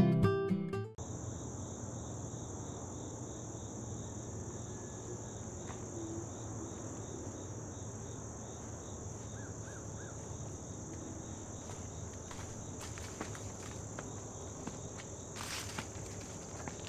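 Steady, high-pitched outdoor insect chorus of crickets and other insects, with a second, lower insect call pulsing evenly beneath it. Acoustic guitar music cuts off about a second in.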